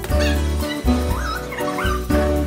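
Background music with a steady beat, over which a dog whines and yips, high pitch rising and falling, in two short spells.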